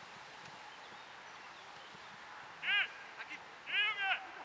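Two short shouted calls from footballers on the pitch, one about three seconds in and another near the end, over a steady hiss.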